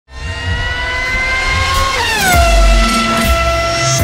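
Intro sting of music with a revving car-engine sound effect: the engine note climbs slowly, then drops sharply about halfway through, as on a gear change, and holds a lower steady pitch over a pulsing deep bass.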